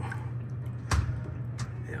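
Water poured from a container splashing and trickling down a refrigerated display case's floor drain, which is now draining freely after being cleared of a blockage. A steady low hum runs underneath, and there is a single sharp knock about a second in.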